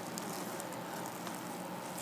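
A steady, even hiss with no distinct events: background room noise.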